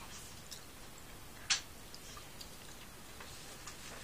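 Quiet chewing of a jelly bean: a few faint, irregular mouth clicks, with one sharper click about a second and a half in.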